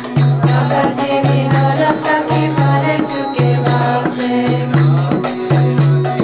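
Devotional kirtan: voices singing a chant over steady rhythmic percussion and a repeating low bass note.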